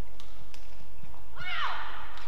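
A badminton shoe squeaking on the court mat during a rally: one short, high squeak that falls in pitch about one and a half seconds in, with a couple of faint clicks before it.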